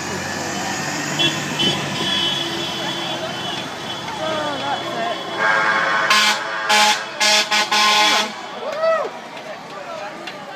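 A vehicle horn honking several times in quick succession for about three seconds, over voices and steady traffic noise.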